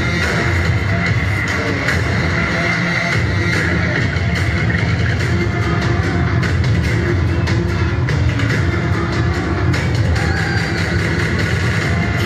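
Electronic K-pop dance track with a steady, heavy beat, played loudly over street loudspeakers on stands.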